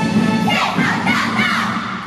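A squad of cheerleaders, many girls' voices together, shouting a cheer from about half a second in, over a music track that fades out near the end.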